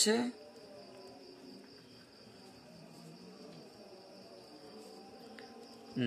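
A quiet room with a faint, steady, high-pitched trill, typical of a cricket calling.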